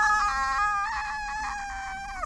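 A single long, high-pitched "aaah" scream held steady for about two seconds, dipping in pitch as it ends.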